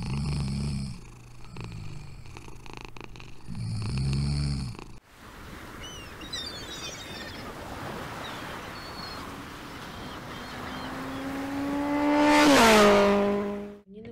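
A sleeping dog snoring, two long snores a few seconds apart. Then a steady windy hiss, and near the end one long drawn-out call that rises slowly in pitch, gets loudest and then drops.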